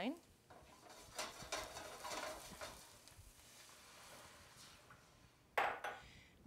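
White wine poured into a hot pan of garlic in olive oil: a sizzling hiss with small crackles starts about a second in, then fades to a faint simmer. A short clatter of pan or stove near the end.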